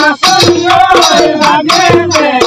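Bihu music: quick, even strokes on a dhol drum with a melody line running over them.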